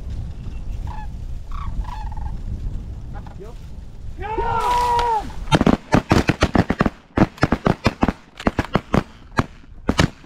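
Wind on the microphone with calls, then a loud call about halfway in, followed by a rapid volley of shotgun blasts from several hunters, more than a dozen shots over about four seconds.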